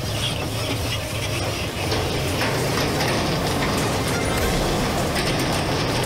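Police pickup truck engine running as the truck moves slowly, with steady mechanical noise throughout.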